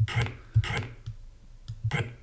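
Short bursts of breathy, hissing noise, three of them: the voiceless, aspirated stretch after the 'p' of a recorded 'pray' played back in Praat, with a faint click.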